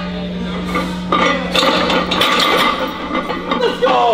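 Excited shouts and laughter after a heavy barbell squat, with the metal clink of loaded weight plates as the bar is set back in the rack.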